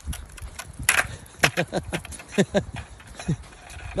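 Footsteps clicking on a wet paved sidewalk, short and uneven, with a woman's brief wordless voice sounds about a second and a half in, again near the middle, and once more near the end.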